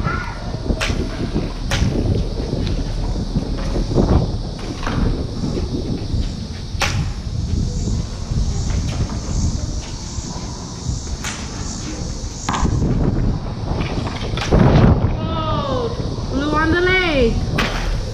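Sound-board combat lightsabers humming and swinging, with several sharp clashes scattered through the bout, echoing off bare concrete walls. Children's voices come in near the end.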